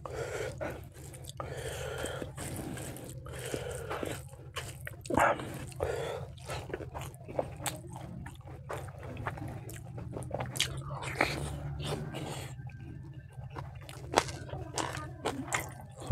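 Close-miked chewing of rice and spicy pork ribs eaten by hand, with many short wet mouth clicks and smacks throughout.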